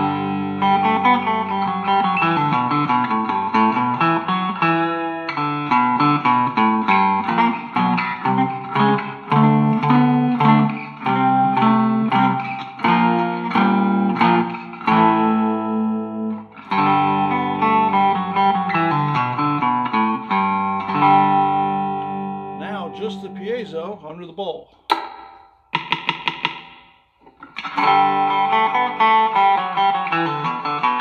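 Three-string cigar box guitar with a dog-bowl resonator, tuned to open G and played through a small Vox Mini 5 amp on the middle pickup-selector setting: a blues riff of ringing plucked notes. Near the end a few notes glide in pitch, then comes a short break with a few sharp muted strokes before the playing picks up again.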